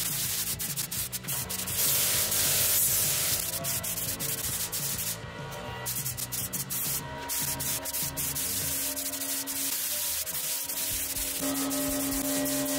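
Gravity-feed compressed-air paint spray gun hissing as it sprays, stopping briefly about five seconds in and again about seven seconds in, with background music underneath.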